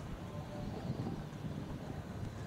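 Outdoor harbourside ambience: wind on the microphone over a steady low rumble.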